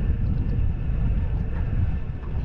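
Wind buffeting an action camera's microphone, a steady low rumble.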